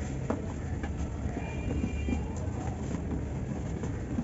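Dry cement block being broken and crumbled by hand: a few sharp cracks and snaps with powder and grit falling into a basin, over a steady low rumble.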